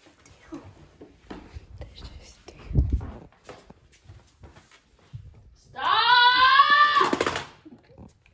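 Soft shuffling with a low thump near three seconds in, then a person's loud scream a little under two seconds long, starting about six seconds in.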